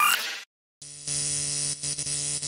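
Electronic glitch sound effect: the tail of a short sting cuts off about half a second in, then a steady electric buzz and static hum starts just under a second in, with a brief dropout near the end.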